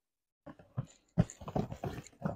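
Tissue paper and cardboard shoe boxes being handled: a run of irregular short rustles and light knocks, beginning about half a second in and growing busier toward the end.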